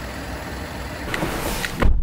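Citroën C4 Cactus engine idling with a steady low rumble, and a low thump near the end.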